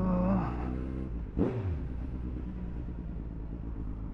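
Suzuki B-King's inline-four engine, through an aftermarket exhaust, pulling away with the revs rising. About a second and a half in the note swoops sharply down, then settles into a steady low hum.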